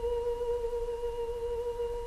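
One long, high note held by a singing voice, steady with a slight waver, as part of a song.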